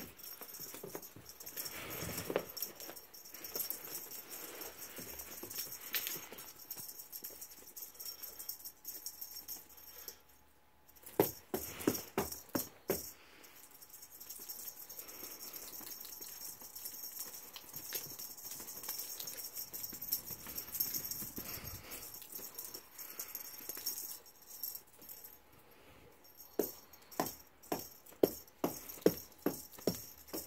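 A rattling cat wand toy being shaken and swung about, giving faint scattered rattles, with a louder flurry about a third of the way through and a quick run of sharp shakes near the end.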